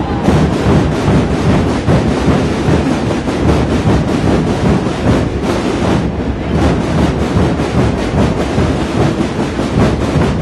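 Massed snare drums (tambores) and rope-tensioned bass drums (bombos) beaten together in a dense, unbroken roll, a steady rumbling din with no single beat standing out.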